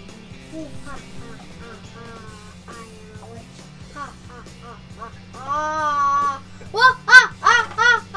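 Background music with low sustained notes and a faint melody. About five seconds in, a young girl's voice comes in over it with one long held sung note, followed by a quick run of short, high sung syllables.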